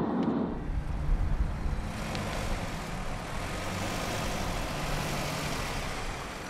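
A car's engine running with a steady low hum and road noise as a sedan drives up to the curb.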